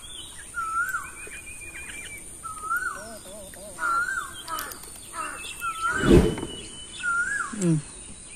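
A bird repeating a short whistled call, a note that rises then falls, about every second and a half, with higher chirps around it. One brief, louder noise comes about six seconds in.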